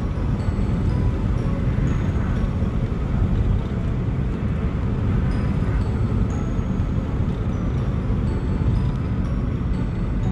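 Steady road and engine rumble heard from inside the cabin of a moving car, with faint scattered high tones above it.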